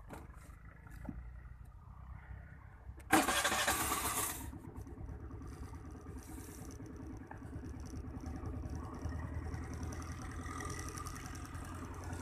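Suzuki Access 125 scooter's single-cylinder four-stroke engine being started on its electric starter about three seconds in: a loud burst of about a second as it cranks and catches, then it idles steadily.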